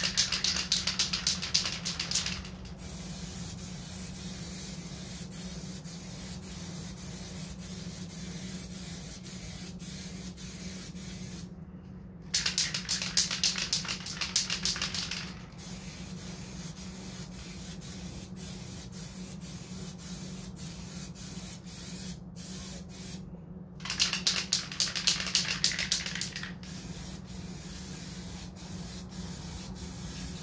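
Aerosol can of filler primer spraying in three bursts of two to three seconds each, about ten seconds apart, as light coats go onto a fiberglass hood. A steady low hum runs underneath.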